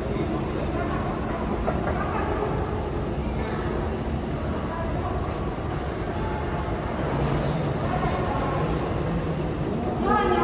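Steady low rumble and hiss of an underground metro station heard from a long moving escalator, a little fuller for a couple of seconds about seven seconds in, with faint voices echoing off the tiled walls.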